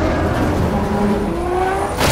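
Helicopter engines and rotors in a film battle sound mix: a dense low rumble with a slowly rising engine whine.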